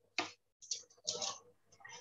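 A few short, faint clicks and small noises over a video-call microphone, separated by gaps, just before someone starts to speak.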